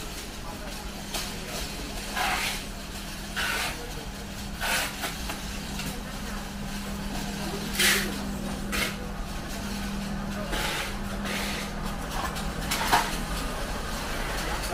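Indoor market-aisle ambience: voices of shoppers and stallholders in the background, a steady low hum that fades near the end, and scattered clacks and knocks at uneven intervals, the loudest about eight seconds in and near the end.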